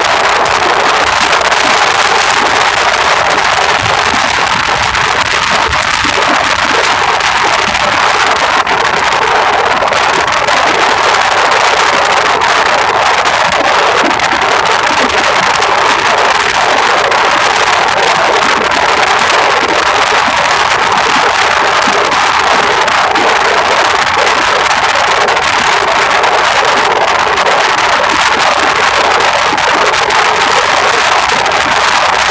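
Music playing in a moving car, mixed with a loud, steady rush of wind and road noise.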